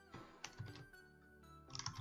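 Computer keyboard typing: a few faint, scattered keystrokes with a quick cluster near the end, over faint background music.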